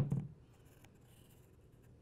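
A sharp tap with a short low thump at the very start, then a felt-tip marker drawing faintly along paper as it traces around a hammer, with a few small ticks.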